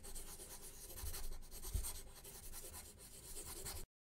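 Drawing sound effect of a pen or pencil scratching over paper in quick, rapid strokes. It cuts off suddenly just before the end.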